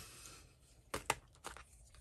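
Small clicks and taps of coloring supplies being handled: a brief rustle at the start, then three short sharp clicks about a second in.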